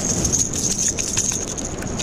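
Freshly landed jacks flopping on wet concrete: irregular faint slaps and taps over a steady background hiss.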